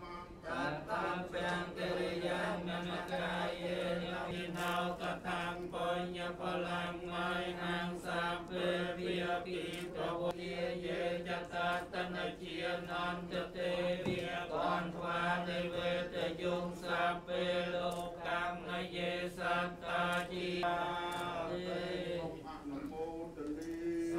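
Theravada Buddhist monks chanting Pali paritta verses in unison, a continuous recitation held on a steady low pitch.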